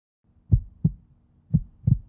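Heartbeat sound effect: two low double thumps, lub-dub, about a second apart.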